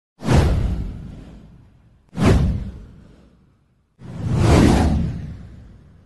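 Three whoosh sound effects with a deep low end, each dying away over a second or so. The first two start sharply, and the third, about four seconds in, swells up more slowly.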